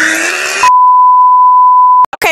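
A loud, steady one-pitch beep, the test tone that goes with TV colour bars, cuts in about two thirds of a second in over the end of a noisy, strained voice.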